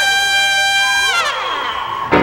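Trumpet and brass holding a long high note, which falls away sharply in pitch a little over a second in; a fainter high tone lingers after the fall.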